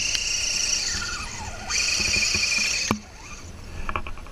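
High-pitched whine from a radio-controlled scale crawler truck's electric motor and gearbox, driving its wheels through loose dirt. The whine sags and falls in pitch as the throttle eases, comes back louder, and then cuts off suddenly with a click.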